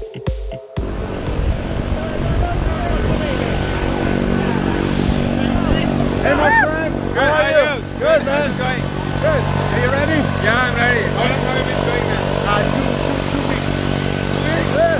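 Electronic dance music cuts off about a second in, giving way to a steady aircraft engine drone, with voices talking over it now and then.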